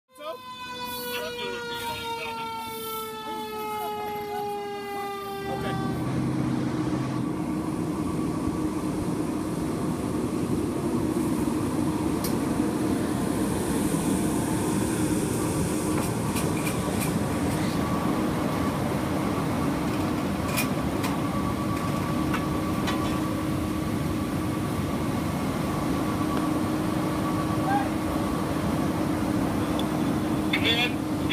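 A fire engine siren winding down, its pitch falling slowly for about five seconds. Then a fire engine's engine runs steadily with a low hum, with a few scattered knocks.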